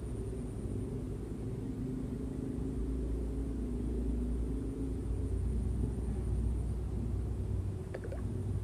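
A steady low rumble with a faint hum and a thin, steady high-pitched hiss above it.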